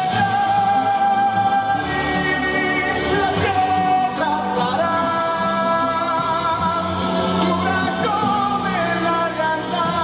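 A male singer holding long sung notes with vibrato over full band accompaniment in a live pop ballad.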